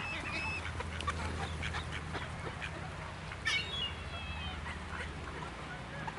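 A flock of mallards calling, with a few short thin calls about half a second in and again about three and a half seconds in, over a low steady hum.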